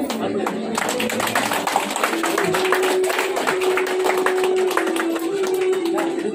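A group of people clapping, many quick uneven claps, with a held musical note that comes in about two seconds in and shifts slightly in pitch.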